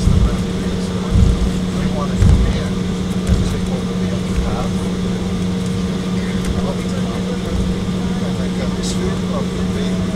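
Cabin noise inside an Embraer E-170 taxiing: the steady hum of its turbofan engines, with a few low bumps in the first few seconds.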